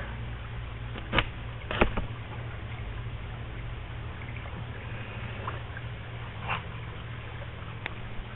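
A steady low motor hum runs throughout, with two short sharp knocks a little over a second in and just under two seconds in.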